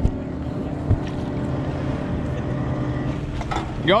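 A steady motor hum with a low drone, joined by a single short knock about a second in.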